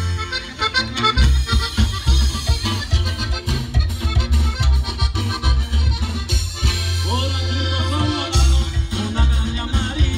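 A live band playing Latin music led by accordion, over a steady, loud bass beat.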